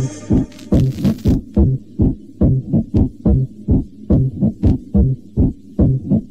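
Techno DJ mix at a breakdown: the full track drops out at the start, leaving a bare kick drum pounding at a little over two beats a second, with a couple of faint hi-hat ticks.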